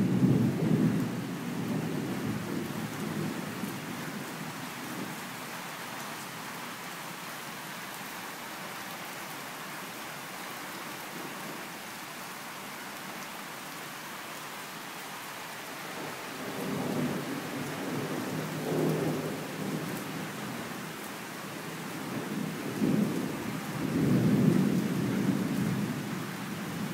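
Heavy summer downpour hissing steadily, with rolling rumbles of thunder: one at the start, another from about 16 seconds in, and a louder one near the end.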